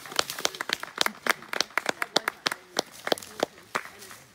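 A small group of people applauding: scattered, irregular hand claps several times a second.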